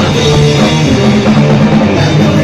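Rock band playing loud and live in a small rehearsal room, with electric guitars and a drum kit going without a break.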